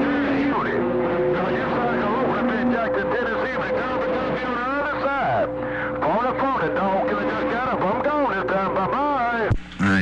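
CB radio receiving several stations at once: overlapping garbled, warbling voices with steady whistling tones running under them. The sound drops out briefly near the end.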